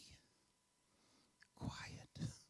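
Near silence for about a second and a half, then a man whispers the single word "quiet" into a handheld microphone.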